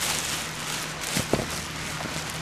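Plastic bag rustling and crinkling as a hand opens it and reaches into the worm castings, with a few short knocks, over the faint steady hum of an aquarium air pump.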